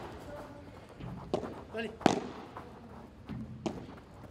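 Padel ball struck by paddles and bouncing during a rally: three sharp pops about a second in, about two seconds in and near the end.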